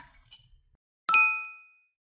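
A short mouse-click sound, then about a second later a single bright bell ding that rings and fades over about half a second: the click-and-bell sound effect of a subscribe-button animation.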